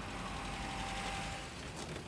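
A car engine and road noise swelling as a car drives up, easing off near the end as it slows; a faint thin steady tone sounds over the first second and a half.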